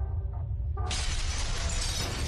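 Animated logo-intro sound effect: a deep steady rumble, joined about a second in by a sudden loud shattering crash of breaking debris.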